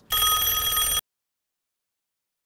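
A telephone ringing once, a loud steady ring that cuts off abruptly after about a second, followed by dead silence.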